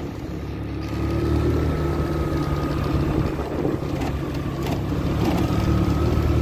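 A motor vehicle's engine running steadily, a continuous low hum with a faint steady high whine over it.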